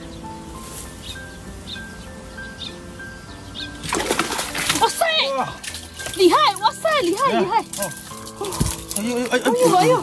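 Background music, then from about four seconds in, water splashing as a landing net is swept through a shallow ditch to scoop up a fish. Excited high-pitched voices shout over the splashing.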